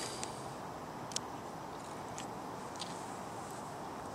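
Faint steady outdoor background hiss, with a few faint brief clicks.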